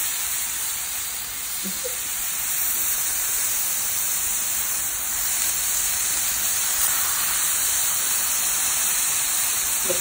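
Flap steak sizzling steadily in a ridged cast-iron grill pan over high heat, an even hiss from the meat and the lime juice in the pan.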